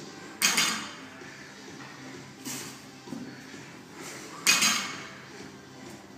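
Loaded barbell with bumper plates clanking during clean pulls: two loud metallic clanks, about half a second in and about four and a half seconds in, with a softer one between them.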